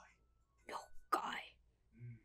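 Two short, quiet, breathy voice sounds like whispering, a little before and just after a second in.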